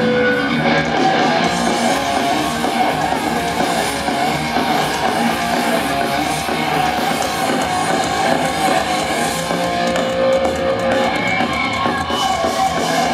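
Thrash metal band playing live: distorted electric guitars, bass guitar and drums at full volume, heard from the audience.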